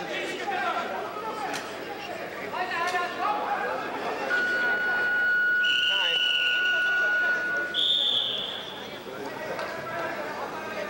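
Hall voices, then a steady electronic tone lasting about four seconds. Two short, shrill whistle blasts sound over it, a referee's whistle stopping the wrestling on the mat.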